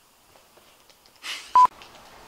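A short hiss followed by a single brief, loud electronic beep, one steady tone, about one and a half seconds in.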